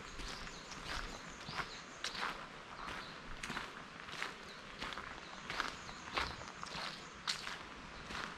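Footsteps on a gravel path at a steady walking pace, about two steps a second.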